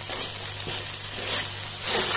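Chopped green beans and grated coconut sizzling in a pan while being stirred with a wooden spatula: a steady frying hiss with faint scrapes of the spatula, growing a little louder near the end.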